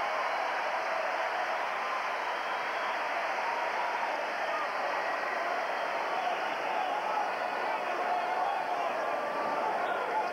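Hockey arena crowd: a steady din of many voices at a constant level.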